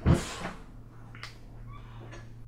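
A sudden loud animal-like screech at the very start, dying away within about half a second, followed by a couple of fainter short sounds.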